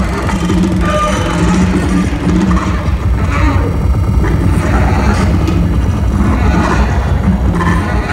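Contemporary concert music for baritone saxophone, percussion and electronics, played live. It is a loud, dense, steady texture heavy in the low end, with low held notes that come and go.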